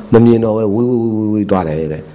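A monk's voice in a drawn-out, chant-like intonation, held at a fairly steady pitch for about a second and a half, then a short break and another phrase.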